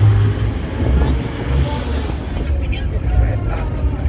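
Car driving along a street: a steady low rumble of road and wind noise on the microphone, with faint voices in the background.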